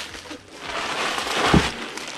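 Plastic bubble wrap rustling and crinkling as it is pulled and torn off a wrapped guitar case, with a single thump about a second and a half in.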